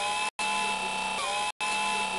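Electric-motor whirring sound effect: a steady whine of several held tones that has just risen in pitch as it starts. It breaks off briefly twice, with a slight pitch wobble in between.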